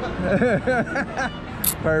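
Men talking, with a laugh near the end, over city street background noise.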